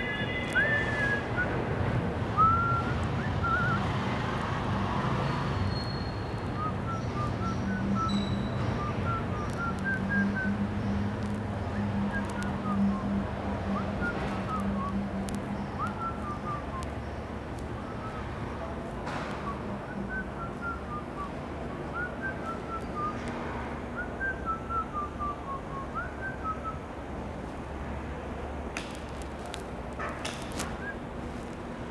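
A person whistling a tune in short, quick notes, over a steady low rumble.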